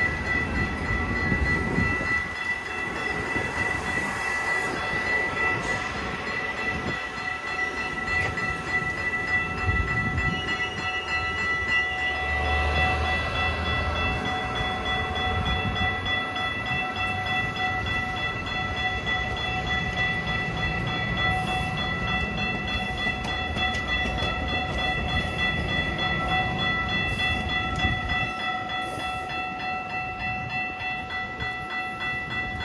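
Metra bilevel commuter train rolling past and away, the rumble of its wheels on the rails thinning near the end as the last car goes by. A steady high-pitched tone sounds throughout.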